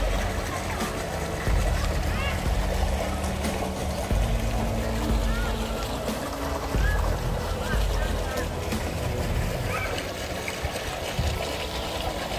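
Open-air swimming pool ambience: a steady wash of distant, indistinct voices with some water sounds, over an uneven low rumble.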